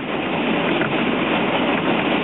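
Train running over a steel bridge, a steady noise of wheels on rails heard from on board.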